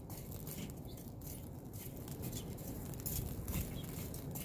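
Long metal tongs raking hot charcoal briquettes in a Weber kettle grill, with faint scattered scrapes and clinks, over a low wind rumble.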